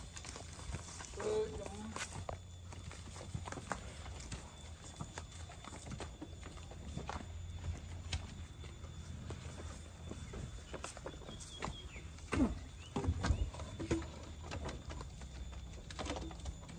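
A crew pushing a heavy hardwood log up wooden skid poles onto a truck: scattered knocks and scrapes of wood on wood, with short calls and grunts from the men. The loudest thumps and calls come about three-quarters of the way in.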